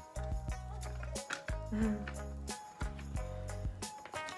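Background music with a steady beat over held bass notes.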